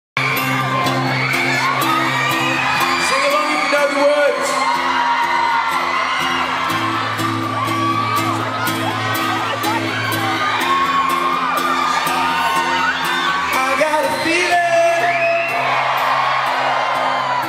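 A concert crowd screaming and whooping, many high voices sliding and overlapping, over an acoustic guitar playing a steady repeated chord pattern.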